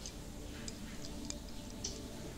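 Faint, sharp ticks, about one every half second, over a quiet room.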